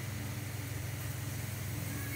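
Hot oil sizzling steadily as flattened rice (poha) deep-fries in a kadai, over a steady low hum.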